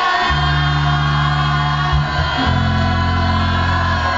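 Live electropop band playing sustained, held chords over a steady bass, amplified through a club PA. The chord shifts about two and a half seconds in.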